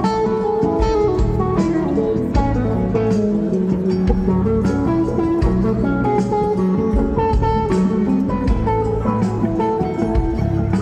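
Live rock band playing an instrumental passage, with an electric guitar lead line of quick changing notes over bass and drums, heard from the audience in a large venue.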